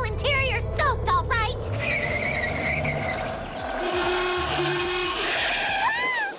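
Cartoon car sound effects: an engine running with a low rumble, then tyres squealing as the car is driven hard, with voices crying out over it in the first second or so.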